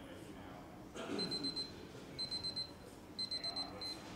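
Digital timer or alarm beeping: quick, high-pitched beeps in short bursts about once a second, starting about a second in, marking the end of a timed writing session.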